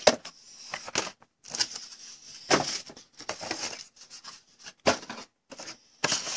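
Empty cardboard card boxes being handled and cleared away: irregular rustling and scraping of cardboard, with a few sharper knocks spread through.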